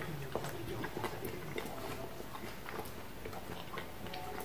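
A man chewing a mouthful of burger: faint, irregular soft clicks from the mouth.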